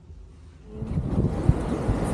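Faint room tone, then about two-thirds of a second in, a sudden change to loud outdoor city noise. It is a low rumble of traffic with wind buffeting the microphone.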